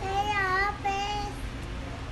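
A toddler's high voice making two drawn-out, sing-song sounds. The first is longer, with a pitch that dips and rises again; the second is shorter and steadier.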